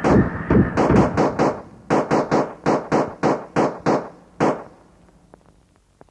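A rapid run of sharp percussive hits, about four to five a second, ends a track about four and a half seconds in. It then dies away to faint tape hiss with a few small clicks.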